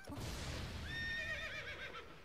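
Horse whinnying, a sound effect in the anime's soundtrack. A rush of noise opens it, then a long neigh that wavers in pitch comes in about a second in.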